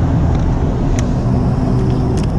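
Loud, steady low rumble of a motor vehicle engine running on the street, with one sharp click about halfway through.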